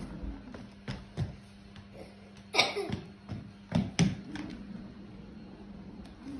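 Heelys (wheel-in-heel shoes) on a hardwood floor as a child steps and rolls: a few sharp knocks of the shoes against the boards over a steady low hum, with a short vocal sound about two and a half seconds in.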